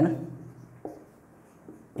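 Marker writing on a whiteboard: faint strokes, with one short, louder stroke a little under a second in.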